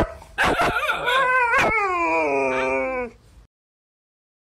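Husky-type dog giving a few short barks, then one long howl that falls steadily in pitch over about two seconds. The sound cuts off suddenly near the end.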